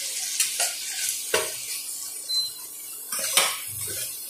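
Metal spatula scraping and clinking against a stainless steel frying pan as prawns and spices are stirred, several sharp clinks, over a light sizzle of hot oil.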